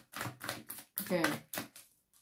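Quick, clicking taps of a tarot deck being handled and shuffled, with a woman saying "okay" about halfway through.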